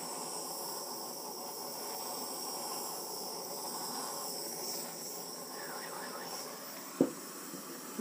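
Handheld gas torch flame hissing steadily as it is played over wet acrylic pouring paint to bring up cells, with a single knock about seven seconds in.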